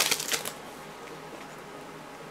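Glossy Prizm trading cards being flicked and slid against each other by hand, a quick crackly rustle in the first half second that then drops to a faint steady hiss.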